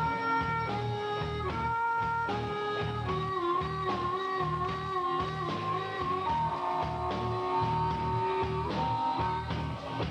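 Live rock band playing, with a harmonica played into the vocal mic carrying long held, bending lead notes over a steady bass and drum groove.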